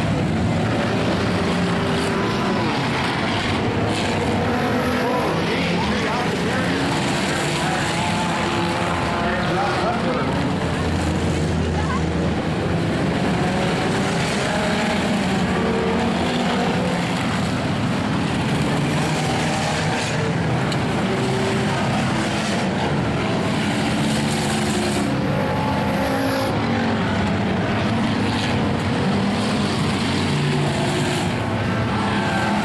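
Several race car engines running and revving at once, rising and falling in pitch as the cars lap the dirt oval.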